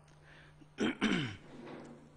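A man clearing his throat once about a second in: a short harsh burst followed by a sound falling in pitch.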